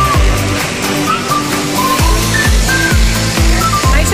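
Electronic dance music with a steady kick drum about twice a second under a synth melody; the kick drops out briefly near the start and comes back about halfway through.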